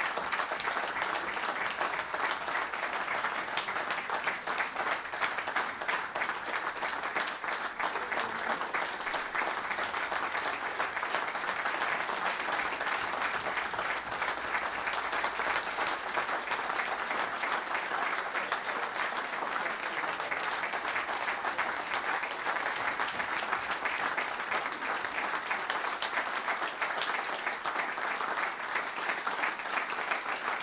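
Sustained applause from a large audience, many people clapping steadily without a break.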